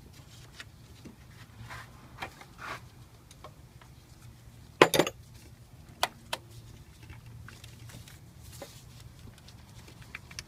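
Hands working around a car alternator in an engine bay: scattered light clicks and knocks of parts being handled, with a brief, louder metallic clatter about five seconds in and two sharp knocks just after.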